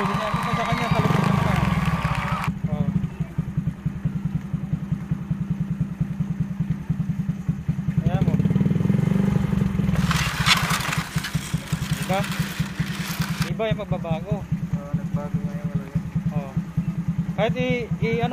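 Suzuki Raider J motorcycle engine running at idle with a steady rapid beat, the oil treated with an engine oil additive. It is revved up briefly about eight seconds in, and a few seconds of hiss follow.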